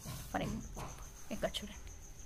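A steady, faint high-pitched whine in the background, with a couple of short, faint fragments of a voice.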